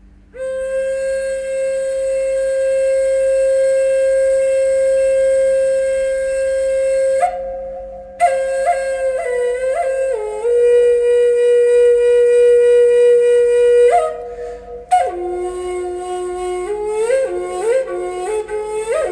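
Solo flute playing a slow melody: one long held note, then phrases of held notes with sliding ornaments, with brief pauses between phrases and lower notes near the end.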